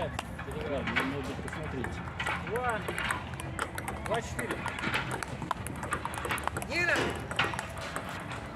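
Table tennis ball clicking off the paddles and the outdoor tabletop in an ongoing rally, a quick irregular run of light knocks. Voices talk over it, loudest near the end.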